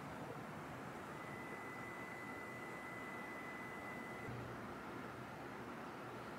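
Faint steady background hiss of room tone. A thin high steady tone runs through it from about a second in for about three seconds.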